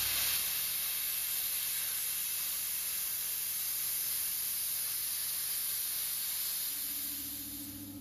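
Plasma cutter cutting 2 mm steel plate: a steady, even hiss of the cutting arc and air with no whine, fading out near the end.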